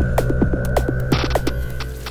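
Electronic logo sting: a low droning hum under a run of quick clicks and short blips, with a brief hiss about a second in, fading toward the end.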